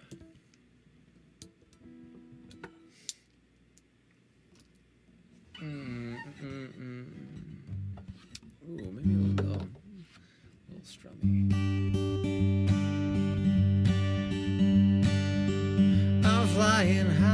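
Acoustic guitar. Quiet at first, with a few soft notes, then about eleven seconds in it starts strumming chords steadily and much louder, as the intro to an improvised song.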